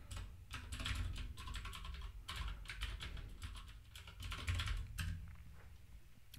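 Typing on a computer keyboard: a fast, continuous run of light key clicks that thins out near the end, over a faint low hum.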